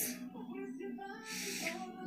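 Faint backing music of a worship song: a soft held tone. Near the end there is a short breathy intake before singing resumes.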